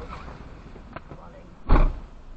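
A car door being shut with one loud, short thump near the end, after a stretch of quiet cabin sound.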